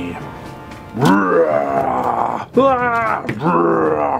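A person's voice making drawn-out grunts and groans, three of them, over background music.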